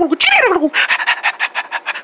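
A person's voice making cartoon hamster noises: a high squeal that slides steeply down in pitch, then a rapid panting chatter of short pulses.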